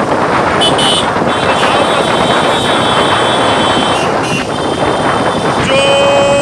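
Motorcycles riding in a procession: engines running under heavy wind noise on the microphone, with a high horn tone held for about three seconds. Just before the end a louder, lower held tone begins.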